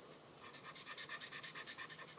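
A felt-tip marker nib scratching across cardstock in rapid back-and-forth colouring strokes. The strokes start about half a second in and are faint and evenly spaced.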